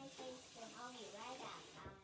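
A girl's voice vocalising with a gliding pitch, no clear words, over a steady hiss that cuts off suddenly near the end.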